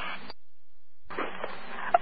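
Police dispatch radio channel between transmissions. The static of one transmission cuts off abruptly, and after a short silence the next transmission keys up with static before anyone speaks.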